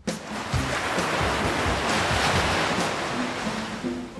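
Ocean wave breaking and washing in: a rush of surf that swells to a peak about halfway and then dies away, over background music.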